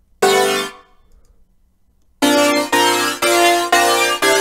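Supersaw synth chords from a Serum wavetable preset with very little detune, with unison widening, flanger, compression and reverb: one short chord stab, a pause of about a second and a half, then chord stabs repeating about twice a second.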